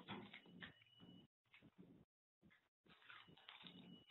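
Near silence: faint background hiss on a web-conference audio line, cutting out to dead silence several times.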